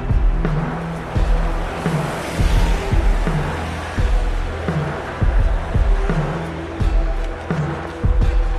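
Electronic drum and bass track with an ambient feel: a repeating beat of drum hits over deep bass notes and a dark synth pad. A swell of hiss rises and fades about two to three seconds in.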